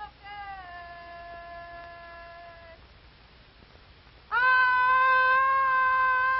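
Boys' voices shouting a long, drawn-out "O-K" call through cupped hands: a quieter held call in the first two and a half seconds, then a loud one held steady from a little past four seconds in. It is the safety patrol's OK signal that the patrol members are off duty.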